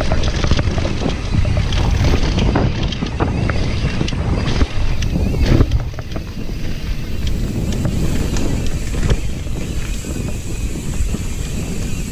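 Wind buffeting the microphone over the rumble of an enduro mountain bike riding down a dirt trail, with many short rattles and knocks from the bike going over rough ground and a louder jolt about five seconds in.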